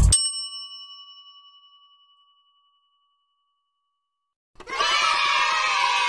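A single bell-like ding that rings out and fades over about two seconds, followed by silence. Music starts again about four and a half seconds in.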